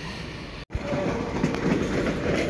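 BLS electric multiple-unit passenger train running on the station tracks, a steady rumble of wheels on rail. The sound drops out completely for a moment just under a second in.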